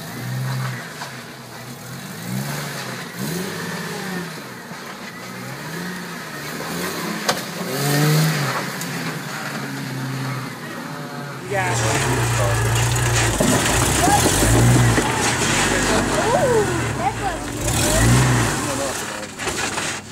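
Lifted Jeep Wrangler rock crawler's engine revving up and down in repeated short bursts under load as it climbs over boulders, louder and fuller from about halfway through.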